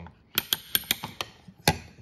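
Kingpin Kinetic centrepin reel's clicker ratcheting as the spool is turned slowly by hand: a run of sharp clicks, about four or five a second, the loudest near the end. It is a strong click, very strong but not too strong.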